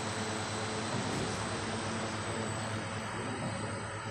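Automatic saree rolling machine running with a steady mechanical hum.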